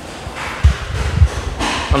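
Three dull, low thumps close to the microphone, a little over half a second apart, with a breathy rush of air just before the last one.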